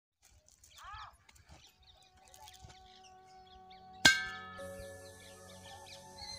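A single sharp metallic clang about four seconds in that rings on with several long sustained tones, over faint steady tones; a short chirp about a second in.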